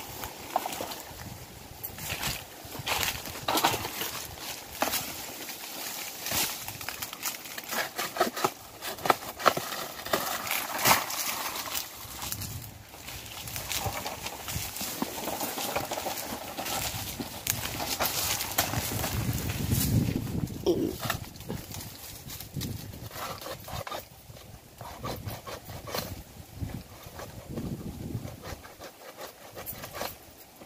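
Irregular knocks, clatter and rustling from a bamboo pole being carried and handled among coconut palm fronds, with a person's voice at times.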